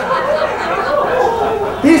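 Several people chattering and laughing, with a man laughing near the end.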